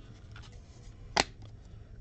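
2016-17 Fleer Showcase hockey cards being handled and slid behind one another in the hand, a faint rustle with one sharp card snap about a second in, over a low steady hum.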